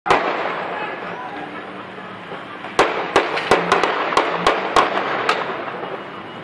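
Gunshots: one sharp crack at the start, then an uneven volley of about ten cracks beginning about three seconds in, over crowd voices.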